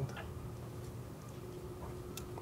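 Quiet room tone: a low steady hum, with a few faint clicks.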